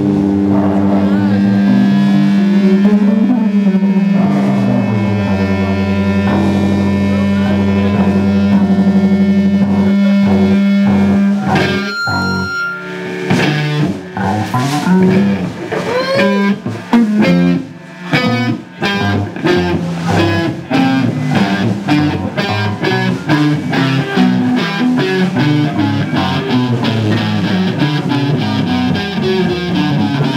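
Small rock band playing loud with distorted electric guitar and drums. A chord rings out held for the first ten seconds or so. Then come a few seconds of separate drum and guitar hits, and from about nineteen seconds in a fast, steady beat with guitar.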